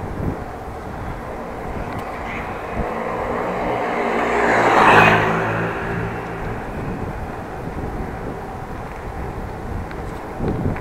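A motor vehicle passing close by: its engine hum and rush swell to a peak about five seconds in and fade within two seconds, over the steady rumble and wind of the bicycle ride.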